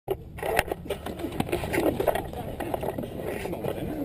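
Indistinct voices of football players and coaches calling out over one another during a contact drill, with a few sharp knocks.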